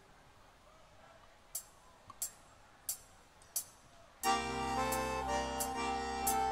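Four short, evenly spaced clicks of a band's count-in, then about four seconds in an accordion enters with a held chord, opening a forró song.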